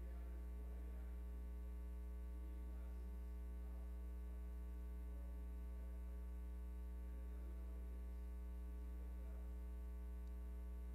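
Steady electrical mains hum with a stack of buzzing overtones, unchanging throughout, over faint indistinct room sound.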